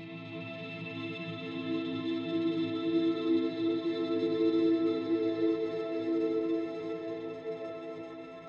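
A held pad chord from the Candyfloss sample-based Kontakt instrument, layered with faint high tones. It swells over the first few seconds and slowly fades toward the end.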